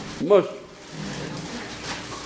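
A man's voice says one short word with a falling pitch, followed by a pause of faint room noise.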